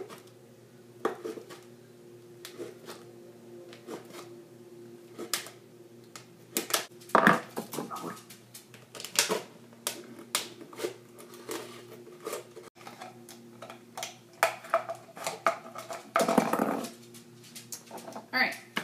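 Thin plastic soda bottle being cut with scissors: irregular crackling clicks and snips, with louder crinkles of the plastic about seven seconds in and again near the end, over a faint steady hum.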